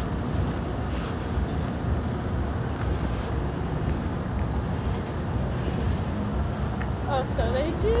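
Steady low rumble of city street noise, traffic and wind on the microphone, with no distinct events; a man's voice starts near the end.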